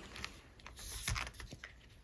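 Faint light clicks and rustling from plastic zipper envelopes being handled and turned in a ring binder.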